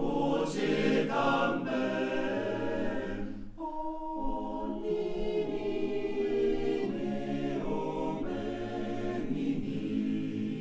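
All-male choir singing a cappella in sustained, close-knit harmony, with a short break between phrases about three and a half seconds in.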